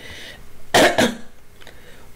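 A man coughing twice in quick succession, two short harsh coughs about a quarter second apart after a quick breath in.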